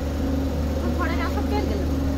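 Steady low rumble and hum inside a crowded railway sleeper coach, with a voice briefly heard about a second in.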